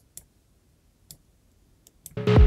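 Near silence broken by a few faint, sharp clicks: computer mouse clicks.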